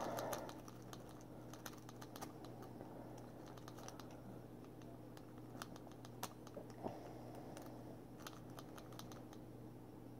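Faint, irregular small metallic clicks of a lock pick rake and tension wrench working the pins inside a round steel padlock, which is not yet opening. A steady low hum runs beneath.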